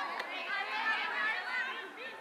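Several voices calling and shouting over one another across a playing field during a game, with no single clear speaker.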